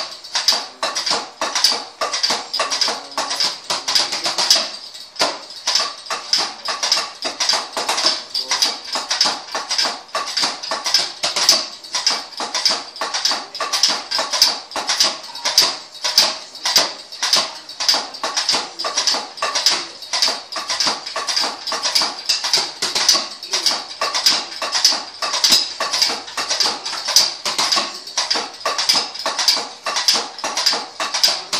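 Sticks clicking and tapping on the rubber and mesh pads of a Roland electronic drum kit, played in a steady, quick beat. Only the dry pad hits are heard, not the kit's drum sounds or any backing music. The beat stops briefly about five seconds in, then carries on.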